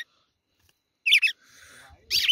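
A red-cowled cardinal gives one short, sharp, high chirping call about a second in, with quick rises and falls in pitch.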